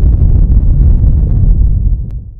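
Loud, deep rumbling sound effect of an animated logo intro, steady and beginning to fade at the very end.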